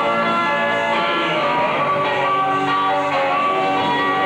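Live rock band playing, with sustained, ringing electric guitar chords over the drums, heard through a poor-quality VHS recording.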